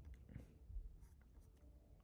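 Near silence: room tone with a faint low hum and a few faint scattered ticks.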